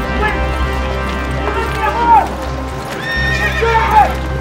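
Horses neighing, with two loud rising-and-falling calls about two seconds in and near the end, and hooves clattering, over steady background music.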